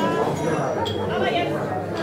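Indistinct chatter of many people talking at once, a theatre audience murmuring while the stage is dark.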